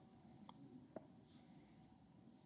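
Near silence: room tone, with two faint ticks about half a second apart.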